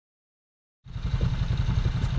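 A low engine-like rumble with a rapid, steady throb, starting just under a second in.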